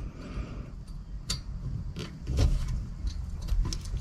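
Irregular light metal clicks and taps of a small nut being threaded by hand onto the clutch cable linkage of a Case IH 75C tractor, as a lock nut going on behind the first nut.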